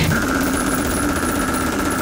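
A rapid, steady machine-like rattle with a held high tone, in the opening of a brutal death metal track, between bursts of the full band.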